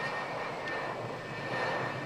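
F4H Phantom jet's engines running on a carrier deck after landing, a steady rushing jet noise with a thin, steady high whine as the plane taxis.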